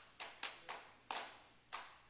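Hand claps, about five in two seconds at an uneven pace, faint and sharp.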